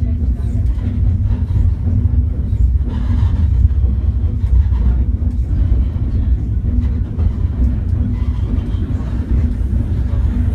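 Snowdon Mountain Railway steam rack locomotive pushing its carriage up the mountain, heard from inside the carriage: a loud, low rumble of the engine and running gear with a regular beat.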